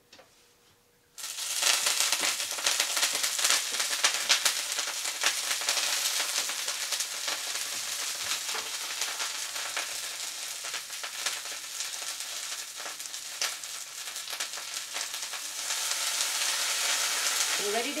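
Kale sizzling in hot grapeseed oil in a cast-iron skillet. The sizzle starts suddenly about a second in as the leaves go into the pan, then carries on as a steady hiss with many small crackling pops of spattering oil.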